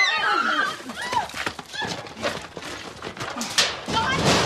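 A physical struggle: men's shouts and strained cries, with scuffling feet and scattered knocks and bumps.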